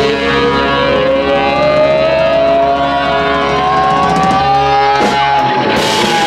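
Live rock trio of electric guitar, bass guitar and drum kit playing loudly, with a long sustained note sliding slowly upward in pitch, like a siren, over held notes. Near the end the drums crash back in hard.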